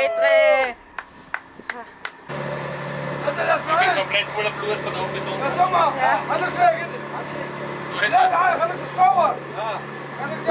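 Voices: a drawn-out shout at the start, a few light knocks, then talking over a steady low engine hum that comes in about two seconds in.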